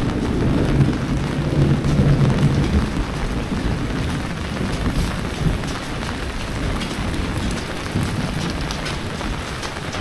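Fairly heavy rain falling steadily on a wet paved lane, with a low rumble in the first few seconds.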